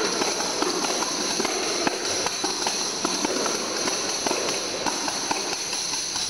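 Three tambourines played together: a continuous shimmer of shaken jingles, broken by frequent short taps and hits on the heads.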